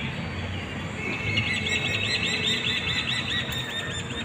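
A bird calling a rapid run of high, evenly repeated chirps, about four or five a second, from about a second in until near the end, over a steady low background rumble.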